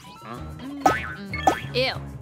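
Background cartoon music with two short springy cartoon sound effects, about a second in and again half a second later, followed by a child's disgusted "ew".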